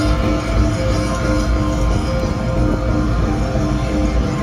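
A rock band's rehearsal leaking out of a concert venue and heard from outside the building: continuous bass-heavy band music with held guitar notes.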